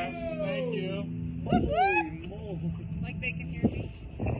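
People's voices talking and exclaiming quietly over a steady low hum. The hum stops with a sharp click near the end.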